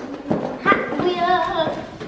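A girl's high, drawn-out sing-song voice with a wavering pitch, over a few knocks and rustles from a hand rummaging in a cardboard box.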